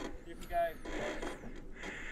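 A faint, brief call from a person's voice about half a second in, over low riding noise.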